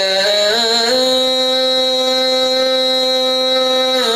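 A man singing a qasidah solo into a microphone, with no drums. His voice climbs in a couple of steps during the first second, then holds one long, steady note.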